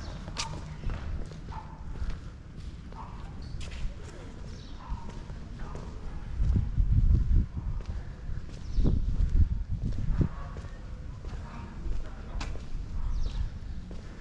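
Footsteps on stone paving, with wind rumbling on the microphone in two gusts around the middle.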